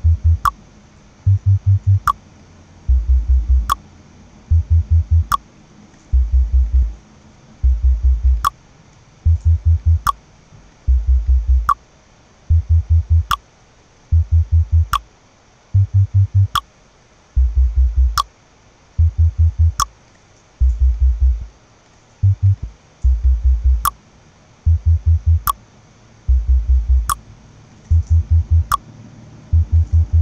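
Playback of an electronic track's low bass part, with pulsing bass notes in short repeated phrases and little above them. A sharp click comes about once every second and a half, once a bar at 146 BPM.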